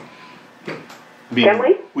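A brief click or knock at the start, followed about a second later by a voice speaking in the room.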